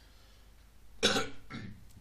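A man coughs about a second in: one loud cough, followed by a smaller one.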